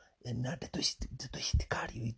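A man's voice speaking close to the microphone in short repeated phrases with brief pauses.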